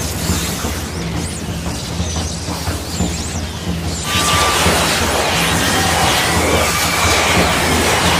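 Animated sound effect of a surge of energy: a dense, loud rushing rumble over a steady low drone, growing louder about four seconds in. It marks the Nine-Tailed Fox's chakra welling up and bursting out around the fighter.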